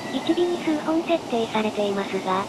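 A synthesized narration voice speaking in steady, level-pitched syllables, over faint station-platform background noise.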